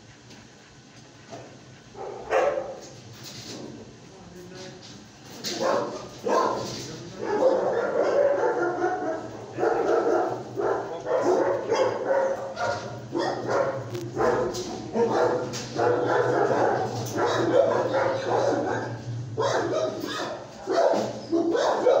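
Dogs barking and yipping in a shelter kennel: a dense, continuous run of barks starts about two seconds in, over a steady low hum.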